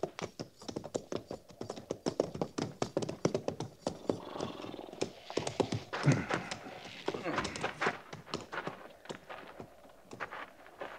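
Radio-drama sound effect of horses walking: an irregular clatter of hoof clops running on steadily, with a few short pitched sounds in the middle.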